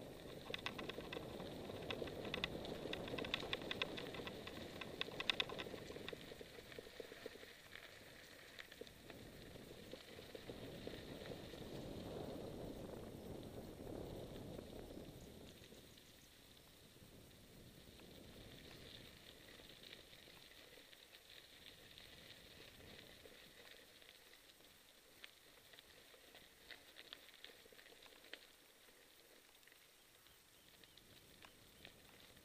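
Mountain bike rolling along a dirt trail: the tyres crunching over dirt and loose gravel, with small clicks and rattles from the bike. Louder for the first fifteen seconds or so, then quieter.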